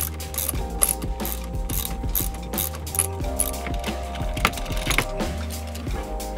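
Socket ratchet wrench clicking in many quick, irregular runs as it loosens the bolt holding the shifter to the shift rod, with background music.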